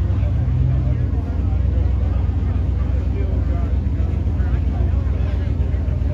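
Drag race cars idling at the starting line: a steady, loud, low engine rumble, with crowd chatter over it.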